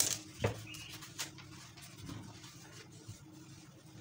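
A plastic French curve ruler being handled and set down on fabric over a table: a few short taps and knocks, the sharpest at the start, another about half a second in and one just after a second, then faint rustling and scraping as it is shifted into place.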